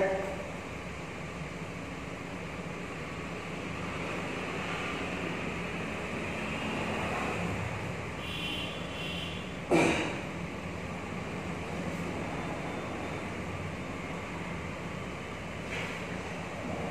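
Steady background hum of room noise, broken once by a short, sharp sound a little past the middle.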